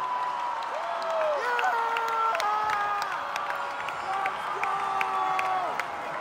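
Large crowd in a basketball arena cheering after a win: many voices yelling and whooping in long held shouts, with scattered sharp handclaps.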